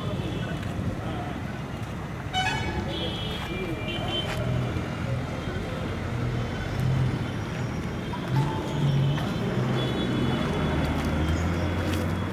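Street traffic: vehicles running past with several horn toots, the first about two and a half seconds in and more near the end, over faint background voices.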